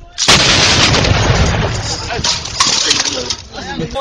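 Tripod-mounted heavy machine gun firing a long sustained burst of automatic fire. It starts suddenly a fraction of a second in and runs for about three and a half seconds.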